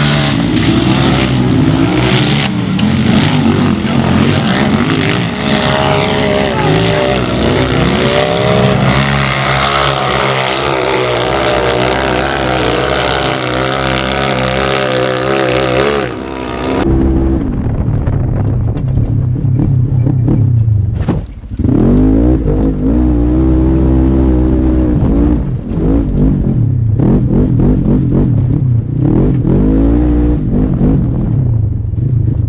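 Side-by-side UTV engines revving hard and repeatedly rising and falling in pitch as they race up a rocky hill. About halfway through, the sound switches to a single side-by-side's engine heard from onboard, duller, revving up and down over rough trail with a brief lift off the throttle a few seconds after the switch.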